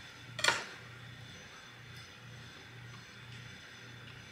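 A single short clink about half a second in, a table knife set down on a wooden serving board. Otherwise only a faint low hum.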